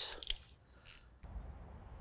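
A few faint clicks and a short soft rustle in a quiet pause.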